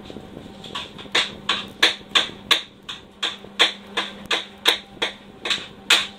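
A kitchen knife chopping on a cutting board in quick, even strokes, about three a second, starting about a second in. A steady low hum runs underneath.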